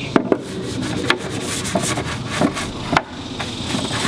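Stiff-bristle scrub brush scrubbing a wet plastic motorcycle fairing: a continuous rough rubbing, broken by several sharp clicks.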